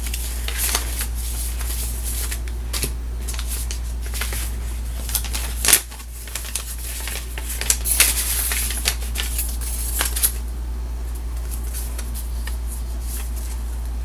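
A paper envelope being opened and its contents handled: rustling and scraping of paper with scattered clicks and a sharp knock about six seconds in, over a steady low hum.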